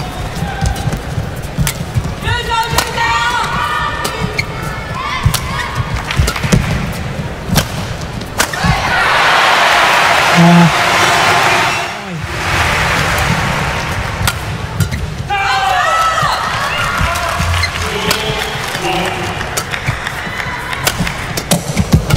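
Live badminton in an arena: sharp racket strikes on the shuttlecock and shoe squeaks on the court, with crowd voices. A burst of crowd cheering and applause comes about nine seconds in and lasts a few seconds.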